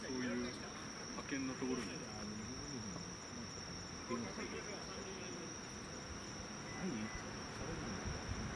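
Night insects trilling in one constant high-pitched note, with distant voices of players calling across the field now and then, mostly in the first half.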